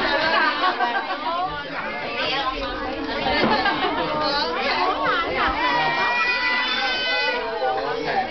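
A crowd of adults and young children talking and calling out all at once. Near the end, one child's high-pitched voice is held in a long call for about a second and a half.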